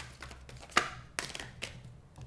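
Tarot deck being shuffled by hand: irregular snaps and taps of the cards, the sharpest about three quarters of a second in.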